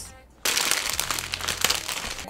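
Plastic food packaging crinkling as a sealed pack of fresh tsukemen noodles is taken out of its outer bag, starting about half a second in.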